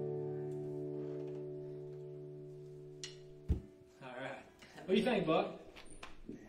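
The band's final guitar chord ringing out and fading, stopped by a thump about three and a half seconds in. Low voices follow near the end.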